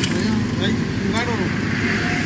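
Vehicle engine idling steadily, heard from inside the cab with the driver's window open, with a brief voice about a second in.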